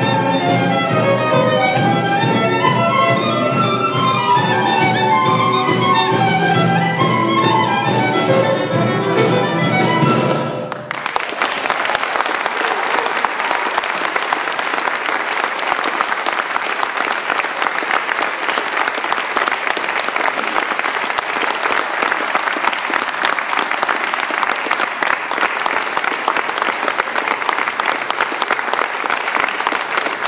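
A string ensemble led by violins plays the closing bars of an Irish folk-style piece, which stops abruptly about eleven seconds in. Then an audience applauds steadily.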